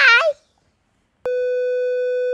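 Colour-bar test-pattern tone: one steady electronic beep that starts sharply about a second and a quarter in and holds at a single pitch.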